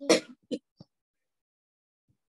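A woman clearing her throat: a sharp burst right at the start and a second, shorter one about half a second later, with a faint third just after.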